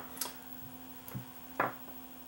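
A few small clicks of RCA plugs being handled and pushed into a monitor's front jacks, over a faint steady hum.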